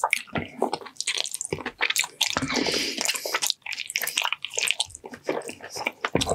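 Close-miked wet, squishy chewing and biting of gelatinous braised ox foot in a spicy sauce, with sticky mouth sounds.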